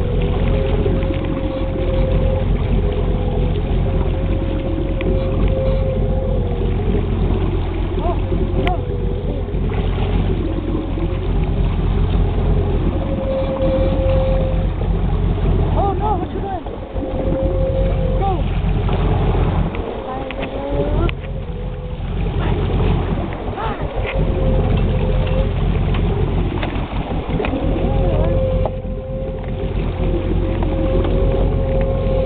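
A boat motor runs steadily, heard from on board: a constant low hum with a tone above it that wavers up and down in pitch.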